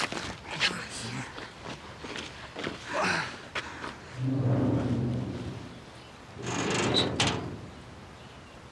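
A teenage boy's effort noises, grunts and groans, as he struggles to walk on a leg that won't lift. There is one long held groan about halfway through and a harsh, breathy strain near the end.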